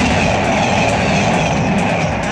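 Locomotive-hauled passenger train running close past, a steady loud rumble of engine and wheels on the rails.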